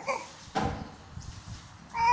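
A young infant cooing. A short high coo fades out at the start, another begins near the end with its pitch falling, and there is a soft rustle about half a second in.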